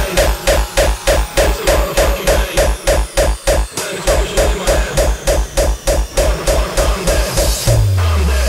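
Electronic hardcore dance track: a heavy kick drum hits fast and steady, with a pitched synth stab repeating on the beat. The kick drops out briefly around the middle, and a low bass tone slides downward near the end.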